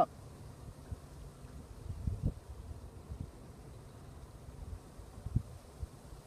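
Wind buffeting the microphone outdoors: a steady low rumble with a few louder buffets about two seconds in and again near the end.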